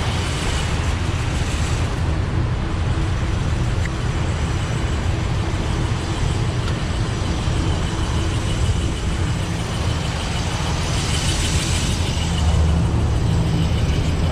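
Trane packaged HVAC unit running, a steady loud rush of air and low hum from the open filter compartment.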